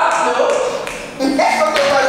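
A group of women's voices talking and calling out over one another, with a brief lull about a second in before the voices pick up again.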